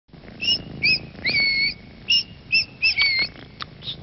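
Small caged bird chirping: about eight short, high chirps in a loose string, one held as a longer note about a second and a half in.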